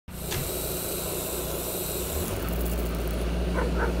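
Heavy RC Caterpillar excavator's hydraulic system: a hiss, then a steady low hum that starts about two and a half seconds in as the pump runs.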